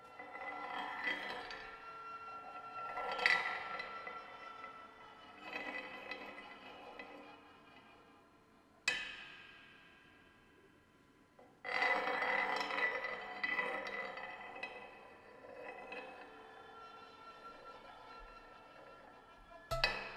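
Sparse, free-time metal percussion: cymbals and metal pieces struck and brushed by hand, each stroke ringing out in long, slowly fading tones. There is a sharp single strike about nine seconds in and a fuller, denser swell a little before twelve seconds, with quick hits near the end.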